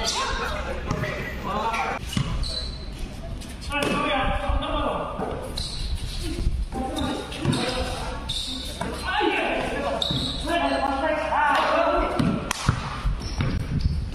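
Players calling out to one another over a basketball bouncing on a concrete court during a pickup game.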